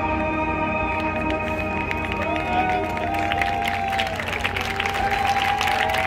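Marching band brass and winds holding a sustained final chord that fades out about a second in. Then the crowd applauds and cheers.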